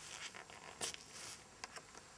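A mounted photograph being pulled off a felt pinboard by hand: a run of short scraping, tearing sounds, the loudest about a second in, then two quick clicks near the end.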